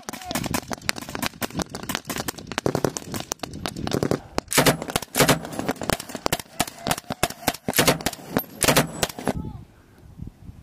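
Sustained blank gunfire from rifles and a machine gun: many loud shots in quick, irregular succession, some in close strings, ending abruptly about nine seconds in.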